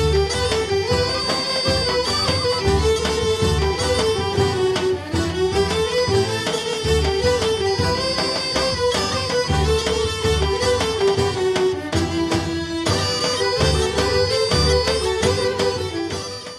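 Bulgarian folk instrumental music: a bagpipe melody rising and falling in repeated phrases over a steady drone, with a regular low drum beat.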